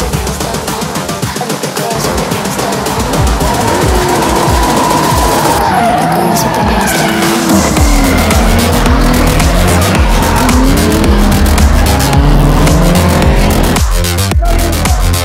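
Drift cars sliding in tandem, their engines revving up and down with tyre squeal from a few seconds in, under electronic music with a beat.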